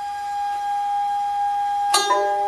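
Nanguan music: an end-blown bamboo xiao flute holds one long, steady note. Just before the end, a sharp plucked-string stroke sounds and the next notes begin.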